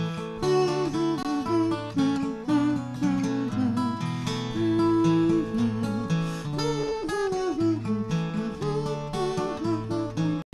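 Acoustic guitar strummed steadily under a wordless hummed melody, with the performer and audience humming the tune of a children's song together.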